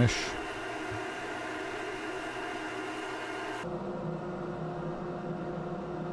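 Wood lathe running steadily with its motor hum and a faint hiss as a cloth buffs polish onto the spinning monkeypod bowl. A little past halfway the sound changes abruptly to a lower, duller steady hum.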